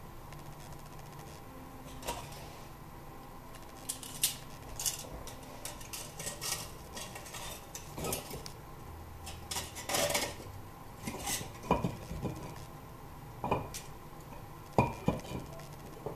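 Stoneware fermenting-crock weights knocking and clinking against the glazed stoneware crock as they are worked loose and lifted out. Irregular scattered clinks and scrapes, with the sharpest knock near the end.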